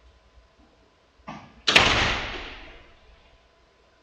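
A single loud bang that echoes and dies away over about a second, with a softer knock just before it.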